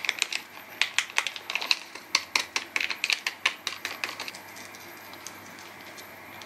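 Foil seasoning sachet crinkling and crackling as it is shaken over a cup of instant ramen, a quick irregular run of sharp crackles that stops about four seconds in.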